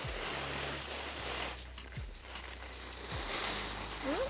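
Skis hissing and scraping over groomed snow through turns, with a steady low rumble underneath.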